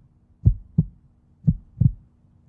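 Heartbeat sound effect: two beats about a second apart, each a pair of short low thumps.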